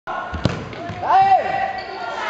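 A futsal ball struck once on an indoor court, a single sharp thud about half a second in. It is followed by a long shout from a player or onlooker.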